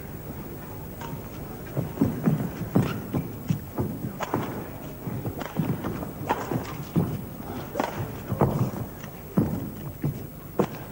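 Badminton rally: sharp racket strikes on the shuttlecock mixed with the players' footfalls and lunges on the court. The knocks come in a quick, irregular string starting about two seconds in.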